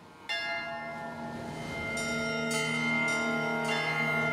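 Opening of background music: a swell fades in, then a bell-like chime strikes about a third of a second in and rings on. A few more chime strikes follow over held notes.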